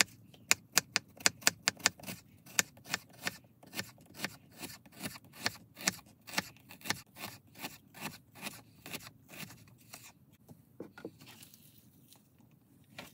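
Kitchen knife slicing an onion on a wooden cutting board: a steady run of sharp taps, about three to four a second, each stroke cutting through and striking the wood. The chopping stops about two seconds before the end.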